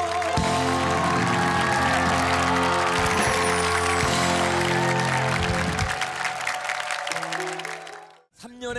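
Live band playing the closing bars of a ballad while a studio audience applauds. Everything fades out over the last couple of seconds.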